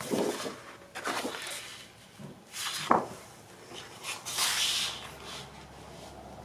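Large sheets of 12x12 scrapbook paper being handled and slid against each other on a stack: four separate paper swishes and rustles, the longest near the end.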